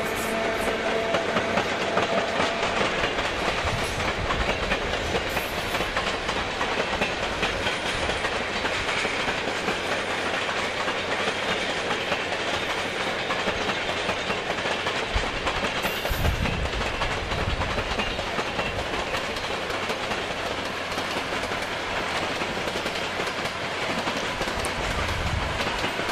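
NS class 1200 electric locomotive 1202 hauling a train of Intercity carriages past, its wheels clicking steadily over the rails and points.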